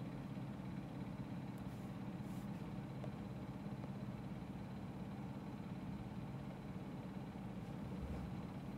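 Steady low background hum in a small room, even throughout, with a faint hiss above it.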